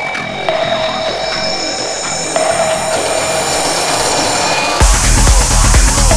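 Electronic psytrance track: a lighter synth passage with repeated tones, then about five seconds in a heavy kick drum and bass drop in with a steady driving beat.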